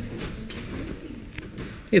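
Faint background voices, with a few light clicks.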